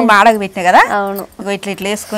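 A woman laughing in short, high-pitched peals, with a rising squeal about three-quarters of a second in.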